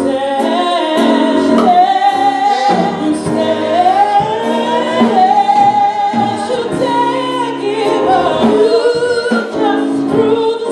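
Live gospel worship singing through microphones, with long held notes that slide up and down in pitch.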